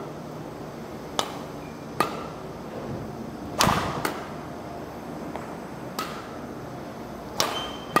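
Badminton racket strings striking shuttlecocks: about six sharp hits spaced one to two seconds apart, the loudest about three and a half seconds in and again near the end, each with a short ring of the hall after it.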